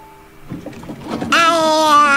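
A cartoon child's voice holding one long vowel for about a second, bending down in pitch as it ends, after a moment of faint soft rattling.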